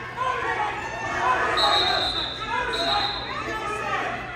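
Several people talking at once in a large gym hall, with two short, steady high tones about a second and a half and nearly three seconds in.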